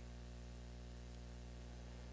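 A pause with only room tone: a steady low hum and faint, even hiss.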